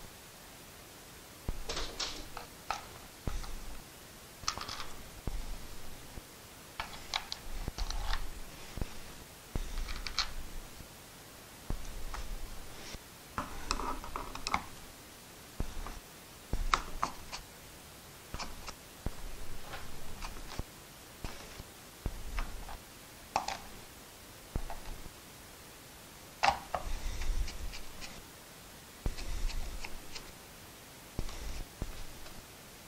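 Hand screwdriver turning screws into the plastic switch housing of a central vacuum hose handle: irregular short clicks and brief scrapes with pauses between them, along with handling of the plastic handle.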